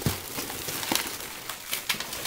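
Toy packaging being handled: a cardboard toy box and plastic wrapping give irregular small crinkles and clicks.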